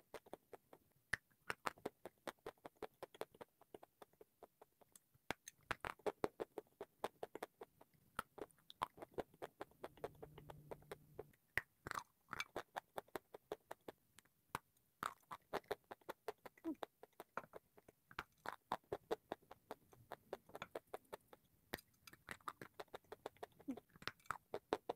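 A person chewing and biting into a crunchy, chalky white food close to the microphone: a quick, irregular run of crisp crackles and crunches, several a second.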